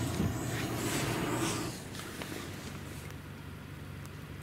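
Quiet ambience of a damp forest heard from a parked car, with a steady low hum. A louder rustling noise fills the first couple of seconds, then drops away.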